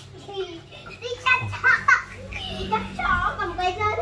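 Young children's voices, chattering and calling out as they play, in short high-pitched bursts.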